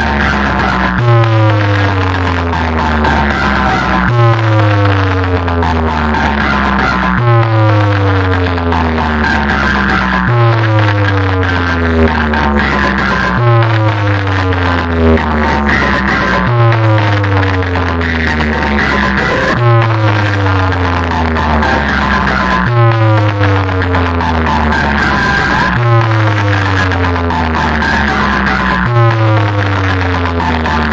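Bass-heavy DJ competition music played loud through a large outdoor speaker stack, a new setup being tested. About every three seconds a deep bass hit lands with a tone sliding down in pitch after it.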